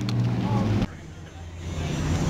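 Low steady outdoor rumble that cuts off abruptly a little under a second in, then low background noise building back up.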